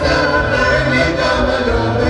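Live Andean traditional dance music: a group of voices singing together over steady, held instrument tones, at an even level.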